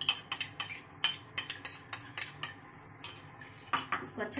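A spoon knocking and scraping against a bowl as tomato puree is tipped out of it into a steel kadhai: a quick irregular run of sharp clicks, then a lull, then a few more clicks near the end.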